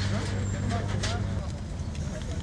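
Crowd murmuring over a steady low engine hum that stops about one and a half seconds in.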